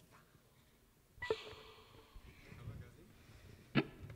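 Two short, sharp breathy vocal sounds close to a handheld microphone, about a second in and again near the end, with low stage room sound between.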